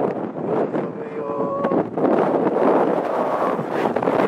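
Strong, gusting blizzard wind buffeting the microphone, rising and falling in loudness.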